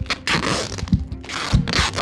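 Adhesive tape pulled off a roll in two long scraping strips as a package is wrapped tight.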